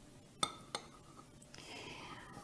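Porcelain saucer clinking twice against the rim of a Turkish coffee cup as it is handled for a coffee-ground reading, two short ringing clinks about a third of a second apart.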